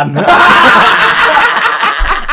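Several men laughing loudly and heartily together, starting a moment in.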